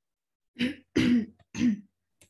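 A person clearing their throat in three short, loud coughs close to the microphone, starting about half a second in.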